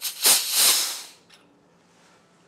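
Compressed nitrogen hissing out of the top fitting of a stainless filter housing used for a filterability test, as the supply hose is released and the 2 bar (29 psi) test pressure vents. The loud hiss lasts about a second and fades out, followed by a faint click.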